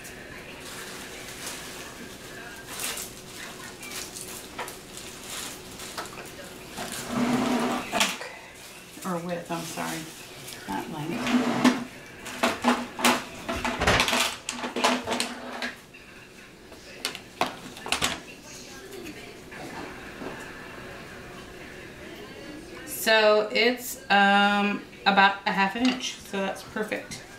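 Craft supplies handled on a tabletop: irregular light clicks and knocks, most of them in the first half. A person's voice is heard briefly a few times, most clearly near the end.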